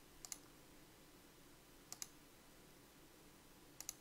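Computer mouse clicking: three quick pairs of clicks, a little under two seconds apart, over near silence.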